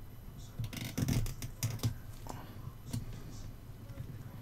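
Light clicks and taps of a circuit board and soldering iron being handled during desoldering: a quick cluster about a second in, then a few single taps.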